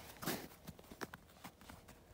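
Faint, irregular crunching steps and clicks on packed snow.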